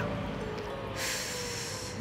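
A person's long breathy exhale, a hissing huff about a second long that starts about a second in, over soft background music.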